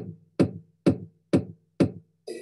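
Student-made GarageBand electronic track: a steady beat of sharp drum hits, about two a second, each with a low tone ringing briefly after it.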